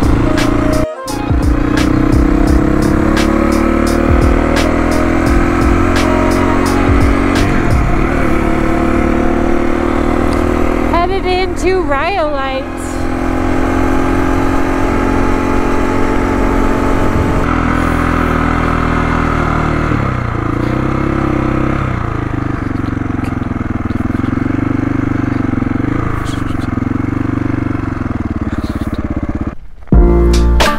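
KTM dual-sport motorcycle engine running at road speed, heard from the rider's helmet camera with wind noise over it. The engine note shifts a few times as the throttle and gears change, and a brief wavering tone comes in about eleven seconds in.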